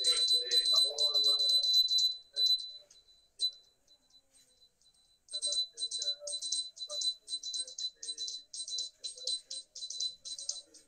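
Small metal percussion struck in a steady rhythm, about three strikes a second, with a bright ringing tone, over faint singing voices. The strikes break off for about two seconds in the middle and then resume.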